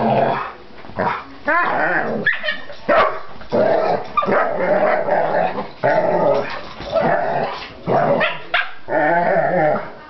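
Dogs growling and barking in rough play, a near-continuous run of short growls and barks.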